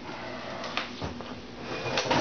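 Handheld camera being moved about, giving rustling handling noise with a couple of light knocks about a second in.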